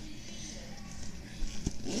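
Faint rustling of hands rummaging inside a fabric handbag, with a single sharp click near the end, then a short hummed "mm-hmm".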